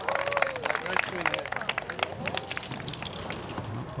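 People laughing in quick bursts that grow quieter toward the end.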